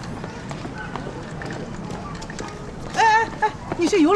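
Footsteps on pavement with faint outdoor ambience, then about three seconds in a woman's voice calls out loudly.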